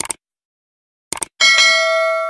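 Subscribe-button animation sound effect: a click, a few quick clicks about a second later, then a bright bell ding for the notification bell that rings steadily.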